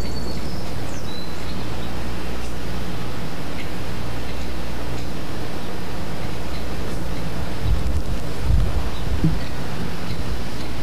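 Steady outdoor background noise with a low hum underneath, and wind buffeting the microphone in a few low bumps near the end.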